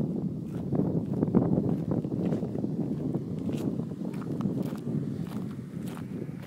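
Footsteps of a person walking at a steady pace over dirt and gravel, an irregular run of scuffs and small clicks.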